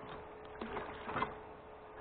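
12 V DC gear motor driving a diaphragm pump, running with a faint steady hum and a couple of light mechanical clicks.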